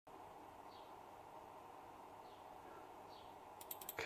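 Near silence: faint room tone with three faint, brief falling chirps, and a quick run of small clicks near the end.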